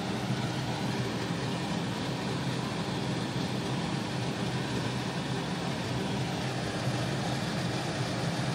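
Steady low hum with an even rushing noise.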